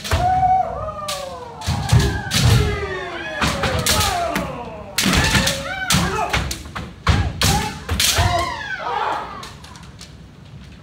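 Kendo sparring by several pairs at once: bamboo shinai striking armour and each other in sharp hits, stamping footwork thumping on a wooden floor, and long drawn-out kiai shouts.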